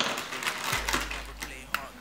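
Light clicking and clattering of small objects being handled, with a young child's faint voice.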